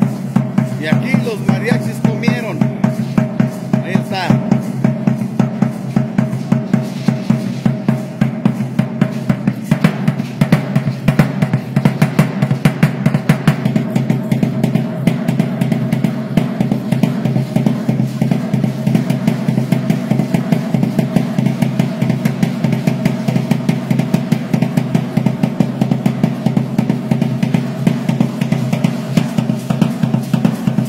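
Drums beaten with sticks in a fast, steady beat that runs without a break, accompanying a traditional festival dance.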